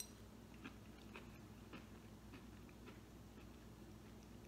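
Faint chewing of a mouthful of hearts of palm pasta and vegetables, with a few soft mouth clicks spread through it.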